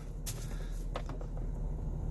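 Steady low hum of a Jeep Wrangler's cabin, with faint clicks of handling about a quarter second in and again around one second in.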